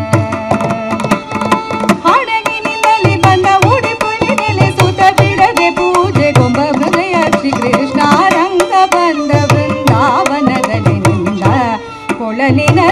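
Carnatic music: a woman sings an ornamented melody with sliding pitch, with violin accompaniment and steady mridangam strokes beneath.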